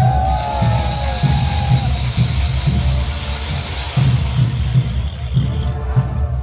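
Street-parade band music for a morenada dance, driven by a steady bass-drum beat, with a continuous bright high hiss over it that stops near the end. Voices call out with falling pitch in the first couple of seconds.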